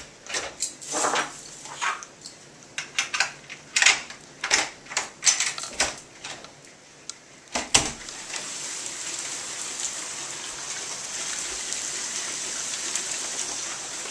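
A run of irregular knocks and clatters for about eight seconds, ending in a louder knock. After that comes a steady hiss of hail falling outside.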